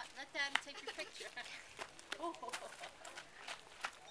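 A young girl's high-pitched voice in short exclamations and chatter, the highest near the start, with scattered light crunching clicks of feet on a gravel path.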